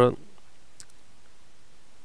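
One faint computer click about a second in, over low steady room tone.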